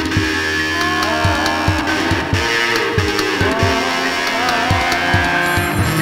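Instrumental passage of an indie rock song: guitar with sliding, bending notes over a steady drum beat and bass, with no vocals.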